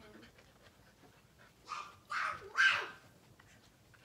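A dog making three short sounds in quick succession, a little under two seconds in.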